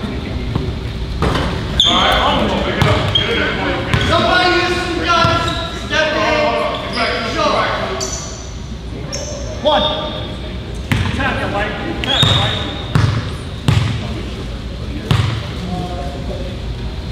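Voices calling out in an echoing gymnasium during free throws, with a basketball bouncing a few times on the hardwood floor near the end.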